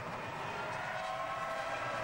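Formula 1 car's V10 engine running at high revs on track, a steady high-pitched note heard through the TV broadcast sound.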